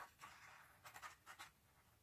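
Faint scratching and rustling of a hand on paper: a few short strokes in the first second and a half, then quiet.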